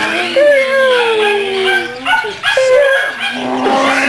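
Puppies whining and yipping while they play, including one long whine that slides down in pitch near the start, with shorter yips after it.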